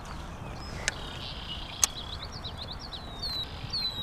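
Birds chirping with quick, high short notes and two falling whistles near the end, over a steady low rumble. Two sharp clicks come within the first two seconds.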